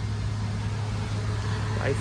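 A steady low engine hum with no change in pitch.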